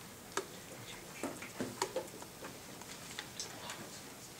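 Faint, irregularly spaced light clicks and taps from pencils and small movements as a class of students works a problem on paper.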